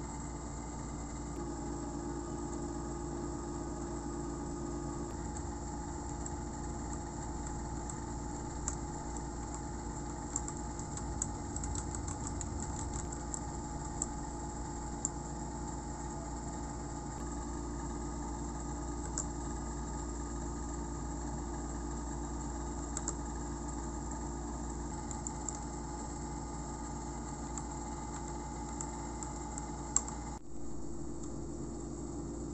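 Scattered keystrokes on a Royal Kludge RK71 mechanical keyboard with linear red switches: short sharp clicks, most of them bunched between about nine and fifteen seconds in, with a few more later. A steady machine-like hum runs underneath.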